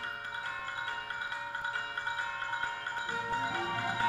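High school wind ensemble playing the start of a piece: high sustained chords, with lower notes joining about three seconds in.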